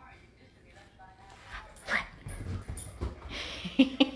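Small chihuahua-mix dog giving a short rising yip about two seconds in, with dull knocks and rustling as it scrambles about on a blanket-covered couch.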